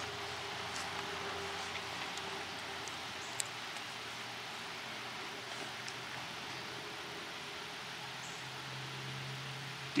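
Steady faint outdoor background hiss with one soft click about three and a half seconds in. Right at the very end comes a single sharp crack: the shot from a Savage Model 10 bolt-action rifle in .223 Remington.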